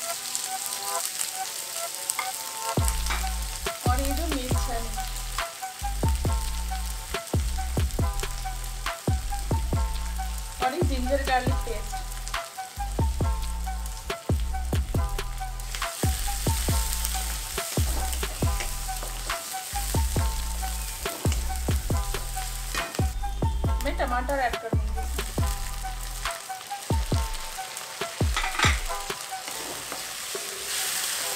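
Chopped onion frying in hot oil in an aluminium kadai, sizzling steadily, while a spatula stirs it and repeatedly scrapes and knocks against the pan.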